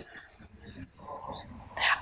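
A short pause in a woman's talk over a lecture-hall microphone: faint room noise, then a brief breathy sound near the end as she begins to speak again.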